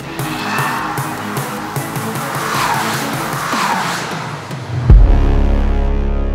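Background music over a car's tyres squealing in three falling swoops, then a deep bass hit about five seconds in that rings on.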